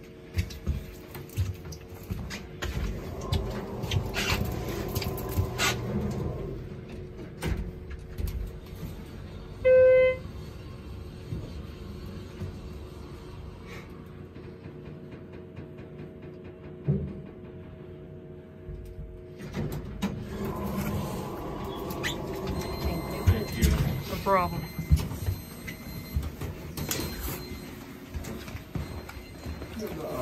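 Inside the cab of a 2000 Schindler 321A holeless hydraulic elevator: a steady low hum, with a single electronic chime about ten seconds in, the loudest sound. Rustling and knocks follow in the second half.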